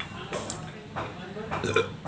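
Eating sounds: noodles slurped and chewed from a bowl held at the mouth, with a few sharp clicks of chopsticks against the bowl.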